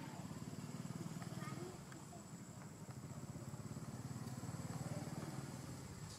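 A low, steady motor rumble with a fast even flutter, like an engine idling nearby, with faint, indistinct voices and a few small squeaks over it.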